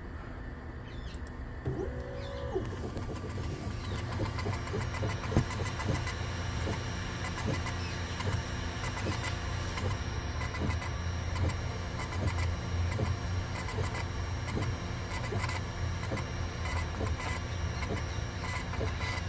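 Longer Ray5 10W diode laser engraver starting an engraving job: a steady hum throughout, then from about two seconds in the gantry's stepper motors whine with a rapid run of fine ticks as the laser head sweeps back and forth over the tile.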